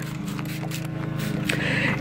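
Hand-pump plastic spray bottle spritzing liquid onto plant leaves, a short hiss near the end.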